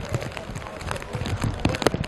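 Ambience of an outdoor five-a-side pitch during a stoppage in play: faint distant voices and scattered light taps and knocks, with no one close by speaking.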